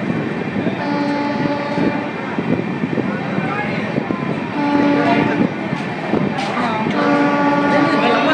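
Train horn sounding three blasts of about a second each (about a second in, halfway through and near the end), over the steady rush and rumble of a train running at speed, heard from its open door.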